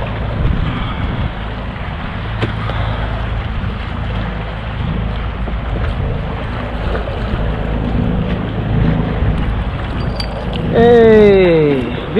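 Wind rumbling on the microphone and water slapping against a fishing kayak on open choppy water, a steady low noise. Near the end a person lets out a loud drawn-out shout that falls in pitch as the redfish comes into the net.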